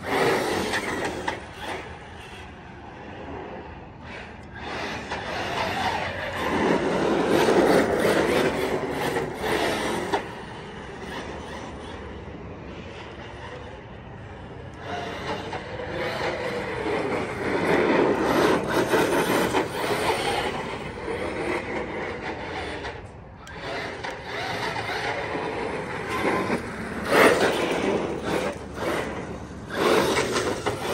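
Team Corally Kagama RC monster truck running on a 4S LiPo: its brushless motor whines up and down in pitch with the throttle while the tyres roll and scrub on asphalt. The sound swells as the truck comes close, loudest three times, and fades as it drives away.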